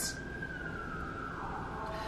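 A faint high-pitched tone, gliding slowly down in pitch for about a second and a half and then fading, over low room noise.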